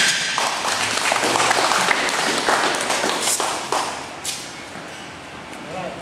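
Onlookers clapping and cheering for a completed heavy bench press, loud at first and dying down after about four seconds.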